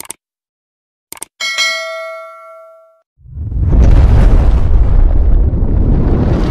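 Edited sound effects opening a song track: a few sharp clicks, then a bell-like ding that rings out for about a second and a half. From about three seconds in comes a loud, bass-heavy rush of noise that swells up and holds.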